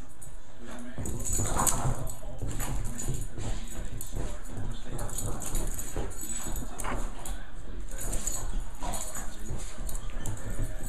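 A Boston terrier playing rough with a plush toy on carpet: irregular scuffling and thuds from paws and toy, with a few short dog noises.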